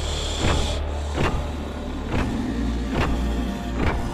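Tense, dark soundtrack music: a low steady drone with a heavy hit about every 0.8 seconds, and a brief high whine during the first second.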